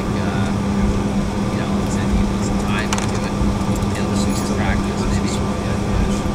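Steady cabin noise inside an Embraer E-170 regional jet: engine and airflow rumble with a constant low hum, heard from a window seat. Faint conversation from nearby passengers runs underneath.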